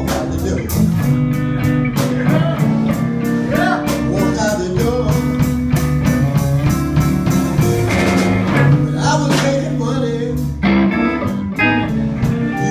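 Live blues band playing: guitar notes over a bass line, with a steady beat.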